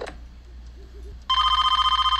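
Telephone ringing once, starting a little over a second in: an electronic trilling ring in two close tones that lasts about a second.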